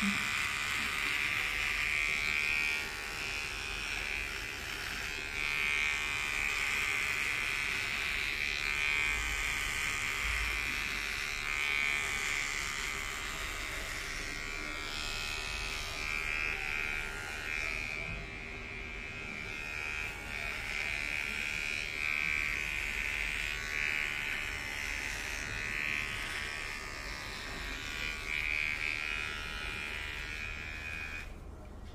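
Cordless electric hair clipper buzzing steadily as it trims beard stubble on the neck and jaw, its tone wavering slightly in loudness as the blade moves over the skin.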